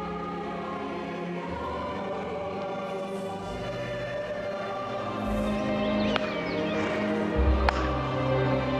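Choral soundtrack music holding sustained chords over a low drone, swelling about five seconds in. Two sharp hand claps about a second and a half apart near the end: the signal claps counting the duellists' intervals to aim.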